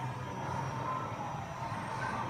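Steady background din of arcade machines: a low hum under a faint electronic wash, with no distinct hits or events.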